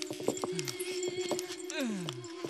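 A man groaning in pain: two drawn-out cries that slide down in pitch, one about half a second in and one near the end. Under them run a steady held low tone and scattered small clicks.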